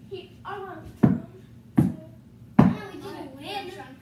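Three heavy thumps about three-quarters of a second apart as children wrestle on a rug-covered floor, with children's voices between them.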